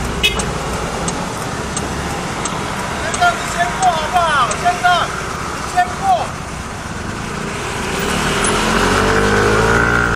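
Motorcycle engine idling amid street traffic, then revving with a rising pitch near the end as it pulls away. A burst of short, high chirps comes through the middle, and a faint tick repeats about every 0.7 seconds.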